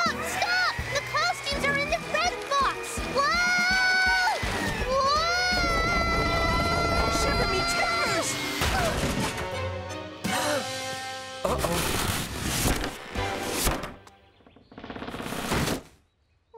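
Cartoon soundtrack music with held and gliding notes, then a run of crashes and clattering from about ten seconds in as the wooden stage scenery collapses.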